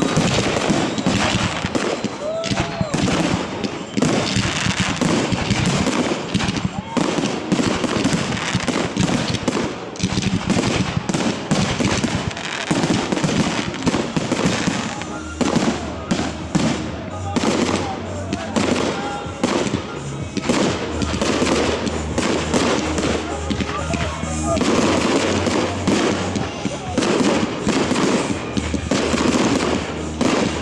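Aerial fireworks display: a dense, unbroken barrage of shell bursts and bangs, many a second, with no let-up.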